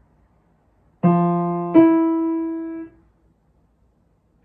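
Piano playing an ascending major seventh as an ear-training interval: a low note, then a higher note about three-quarters of a second later. Both are held for about a second and then cut off together.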